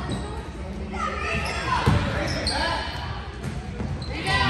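Voices calling out and a basketball bouncing on a hardwood gym floor, echoing in a large gymnasium, with a sharper thud about two seconds in.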